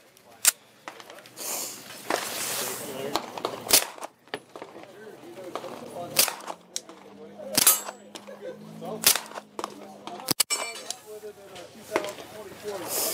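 Suppressed 9 mm Springfield XD pistol with a Banish 45 suppressor firing about six single shots at a slow, uneven pace, a second or more apart.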